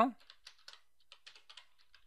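Computer keyboard being typed on: a quick run of faint key clicks, about a dozen strokes.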